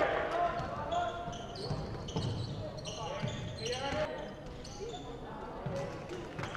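Basketball game on a gym's wooden court: a ball bouncing in irregular thuds and short high-pitched sneaker squeaks, with players' shouts in the hall.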